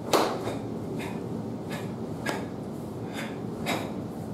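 A barefoot karateka moving through stances and strikes makes a series of short, sharp snaps and swishes of gi cloth and feet. There are about seven in four seconds, the loudest at the very start.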